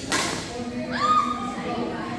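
A badminton racket smashing a shuttlecock: one sharp crack just after the start, with the hall's echo behind it. About a second later a high squeak rises and holds briefly.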